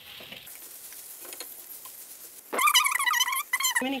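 Potato filling being stirred with a spatula in a frying pan, with a low sizzle and a few scrapes. About two and a half seconds in, a loud, high-pitched wavering call cuts across for just over a second.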